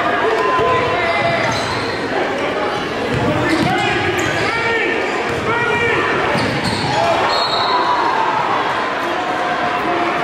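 Basketball dribbled on a gym's hardwood floor, with several short sneaker squeaks about halfway through, over the chatter of a gym crowd.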